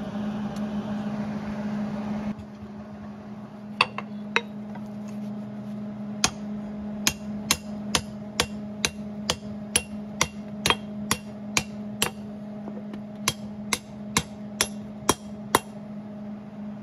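Hand hammer striking a heated three-quarter-inch steel bar on an anvil to bend it. Two blows come first, then a steady run of strikes at about two a second, each with a short metallic ring. A steady low hum runs underneath, and a hiss cuts off about two seconds in.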